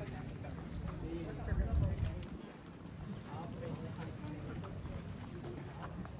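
Street ambience of passers-by talking and footsteps on the paved path, with a brief low rumble about a second and a half in, the loudest moment.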